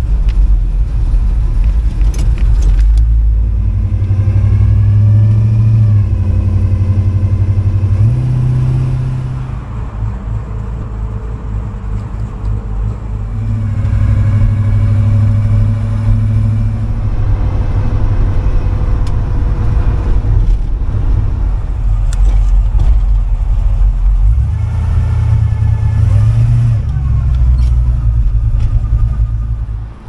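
A 1957 Chevrolet Bel Air's 350 V8 with headers and dual Flowmaster exhaust, heard from inside the cabin while driving. A deep exhaust rumble swells under throttle several times and eases off between, with a quieter stretch about ten seconds in.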